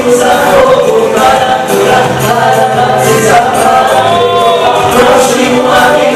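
A man and a woman singing a Portuguese gospel song into microphones over instrumental accompaniment with a steady bass line and light cymbal hits, loud and continuous.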